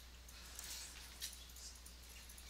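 Quiet room tone with a steady low hum, and one faint computer-mouse click a little past a second in.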